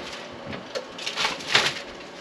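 Foil-lined baking pan being drawn out of an oven and set down on the stovetop, with two short rustling scrapes of foil and metal in the second half.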